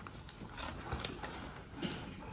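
Handling of a spiral-bound paper notebook: paper rustling with a few irregular light knocks and clicks, the sharpest about a second in and near the end, over a low steady room hum.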